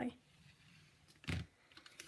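One short knock about a second in, then a few faint clicks: plastic-handled blending brushes being gathered up and set down on the craft desk.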